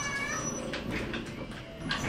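Lift doors giving a short high-pitched squeak in the first half second, followed by a click near the end, as the door-open function struggles to work properly.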